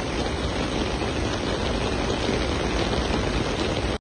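Steady wind noise buffeting the microphone, with surf washing on the rocky shore beneath it.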